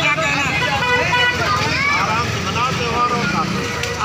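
Voices talking over busy street noise, with a motorcycle engine running close by as a steady low rumble.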